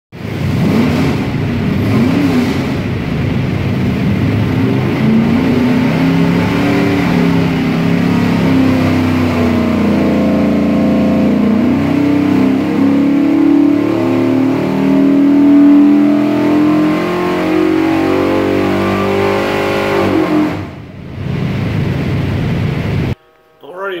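427 cubic-inch small-block Ford V8 with a hydraulic roller camshaft and Holley Terminator X fuel injection running under load on an engine dynamometer. A few quick revs come first, then a long steady climb in revs to its loudest point about two-thirds of the way in. The revs ease back, dip off the throttle near the end, and the sound cuts off suddenly.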